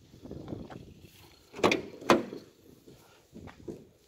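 Rear cargo door of a Mercedes-Benz Sprinter van being unlatched and swung open: some handling noise, then two sharp clunks of the latch and door about a second and a half and two seconds in, with a few lighter clicks near the end.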